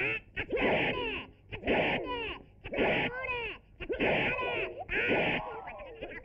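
Film fight-scene sound: a quick series of sudden bursts, roughly one a second, each sliding down in pitch, from hit and swish effects mixed with fighters' yells.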